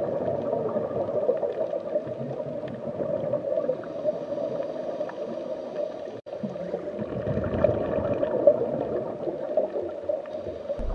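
Underwater ambience: a steady, muffled rushing and gurgling of water. It cuts out for an instant about six seconds in, then carries on much the same.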